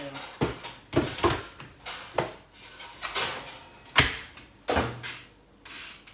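Clunks and clicks of a stand mixer's steel bowl and head being fitted and worked by hand, with a string of sharp knocks, the loudest about four seconds in. No motor runs: the machine won't start.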